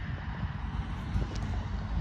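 Wind buffeting the microphone outdoors: an irregular, gusty low rumble.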